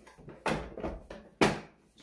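Plastic housing parts of a Roomba S9 self-emptying base scraping and knocking as they are pushed and slotted into place, with a sharp clack a little before the end.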